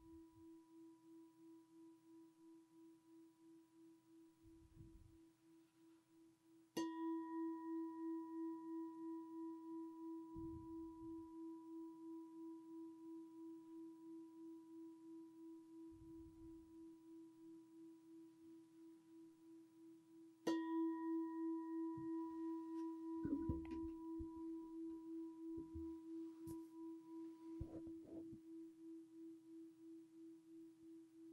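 A meditation bell, a struck singing bowl, rings with a long fading tone that wavers in a slow steady beat. It is struck afresh about seven seconds in and again about twenty seconds in, marking the close of the meditation. Soft low thumps and rustles come between the strikes.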